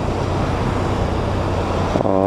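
Kawasaki ZX-6R 636 sportbike's inline-four engine running steadily, under a constant rush of road and wind noise.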